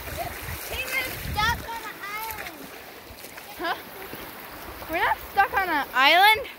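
Splashing and rushing water of a shallow stream, heaviest in the first second or so. Over it are several high, arching voice-like calls that get louder near the end.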